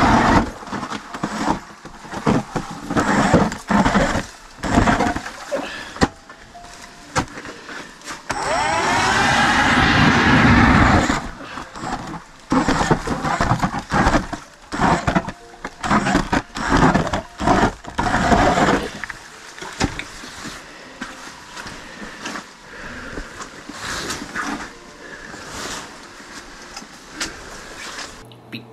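Battery-powered StrikeMaster Lithium ice auger drilling through the ice. It gives short bursts and knocks of the bit, then runs for about two and a half seconds around a third of the way in, its pitch bending as it cuts.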